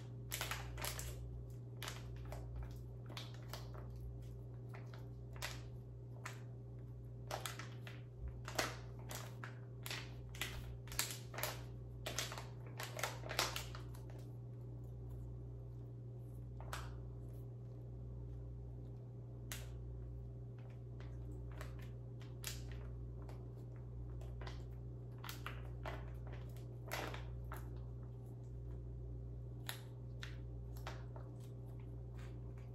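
Crinkling and rustling of a white paper packet being handled and unfolded. The crackles come thick in the first half and sparser later, over a steady low hum.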